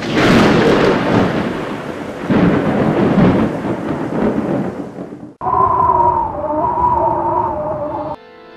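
Thunder-and-rain sound effect with rolling rumbles that swell and fade for about five seconds. It breaks off suddenly and is replaced by a held, wavering chord of several pitches that stops abruptly near the end.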